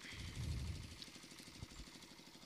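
Faint engine idling, a low steady putter that swells briefly in the first second.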